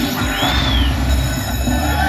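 Slot machine sound effects for a Mini jackpot award during a respin bonus: a high whistle-like tone sweeps up and back down about half a second in, over steady electronic tones and a low hum from the casino floor.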